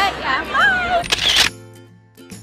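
Young women laughing and talking, then a camera shutter click about a second and a half in, after which soft background music with light tinkling notes takes over.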